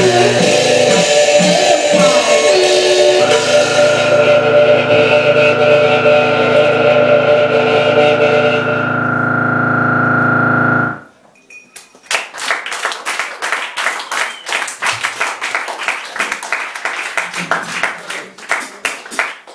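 Live electronic band playing distorted synthesizer and drums, settling into one held chord that cuts off suddenly about eleven seconds in as the piece ends. After a brief pause the audience applauds.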